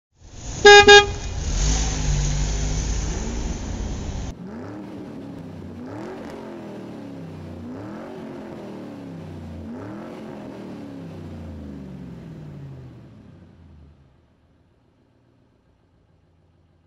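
Two short car-horn toots, followed by a car engine running loudly and cutting off abruptly after about four seconds. Then a fainter engine revs over and over, about once every two seconds, its pitch rising and falling each time, fading out near the end.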